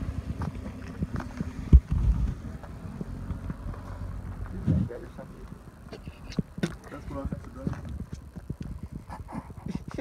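Footsteps crunching on gravel with knocks and rubbing from a handheld phone. A sharp knock comes about two seconds in, and short crunches and clicks follow through the second half.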